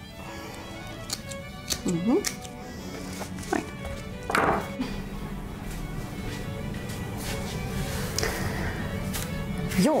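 Light background music with several sharp snips of small hand scissors cutting flower stems in the first few seconds, and a brief rustle of plant stems about four seconds in.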